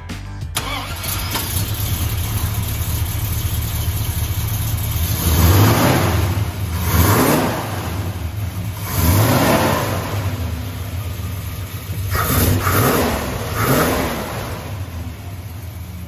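Dodge 360 V8 engine with a four-barrel carburettor running at idle, its throttle blipped about five times so that it revs up and drops back each time.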